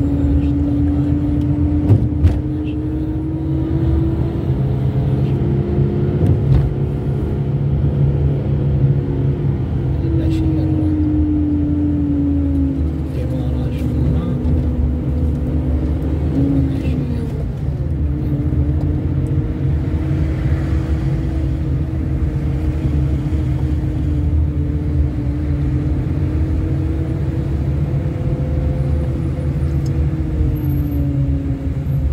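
Car engine and road rumble from a moving car: a steady low rumble with an engine hum that slowly rises and falls in pitch as the car speeds up and slows. A couple of sharp knocks come about two seconds in.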